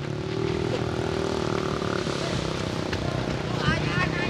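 An engine running steadily at a constant pitch over a broad rumbling noise, with faint shouting near the end.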